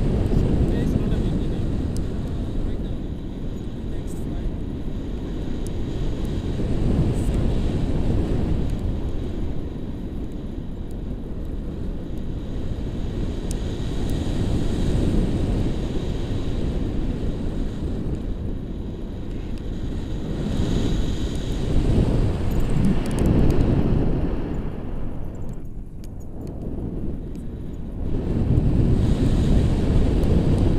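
Wind rushing and buffeting across the microphone of a pole-mounted action camera during a tandem paraglider flight. The sound is a deep, rumbling rush that swells and eases in gusts every few seconds.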